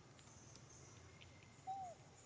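Near-silent forest background with one short call near the end: a single clear note that falls in pitch.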